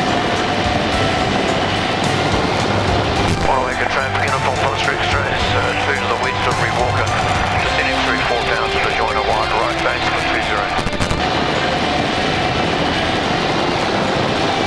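Steady drone of an aerobatic biplane's engine and propeller, with wind rush, heard from inside the cockpit.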